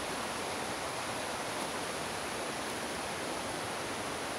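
Steady, even rushing of flowing water from a forest stream, with no breaks or changes.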